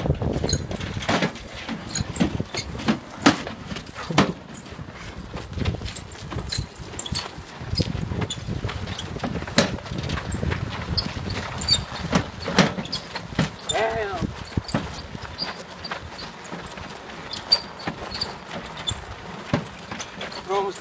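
A lawn-tractor mud mower being pushed by hand with its engine off, its knobby ATV tyres and the pusher's footsteps crunching over a gravelly lane, with irregular clicks and knocks. It is pushed because its welded differential case has snapped in half.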